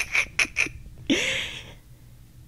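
A woman laughing: four quick short laughs, then a longer, higher, breathy laugh that trails off near the end.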